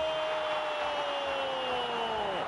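A male sports commentator's long drawn-out shout, one held vowel sliding slowly down in pitch, over steady background broadcast noise. It is his reaction to a shot striking the crossbar.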